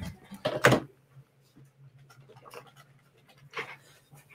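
Movement noise close to the microphone as one person leaves the desk chair and another sits down: a short loud burst of noise about half a second in, then faint rustling over a faint low hum.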